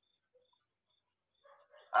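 Near silence with a faint, steady high-pitched tone, most likely electronic noise in the stream audio. A man's voice starts right at the end.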